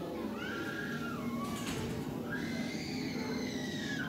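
High-pitched children's voices, drawn-out calls and squeals rising and falling in pitch, over the steady murmur of a busy indoor hall.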